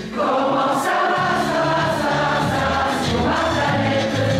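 Mixed choir of men's and women's voices singing in parts, coming in again after a brief break between phrases.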